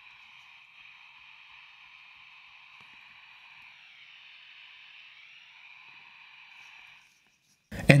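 Faint, steady receiver static from the speaker of a Quansheng UV-K5 fitted with the v1.0 Si4732 HF mod, tuned with no antenna and turned to maximum volume. The thin hiss stays quiet even at full volume, the low audio output of the v1.0 mod, which lacks an audio amplifier. It cuts off about seven seconds in.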